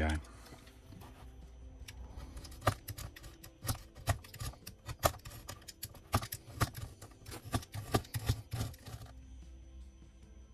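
Dried modelling clay on the edge of a foam diorama base being sanded by hand: a run of rough, uneven scraping strokes, about two a second, that stops about nine seconds in. Faint background music follows.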